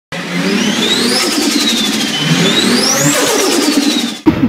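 Car engine revving hard twice, the pitch climbing for about a second each time and then falling back.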